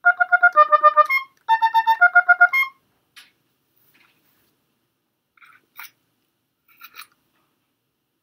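Oboe playing two quick runs of rapidly repeated staccato notes, about eight a second, each run lasting just over a second with a short break between them. After the runs stop, a few faint clicks follow.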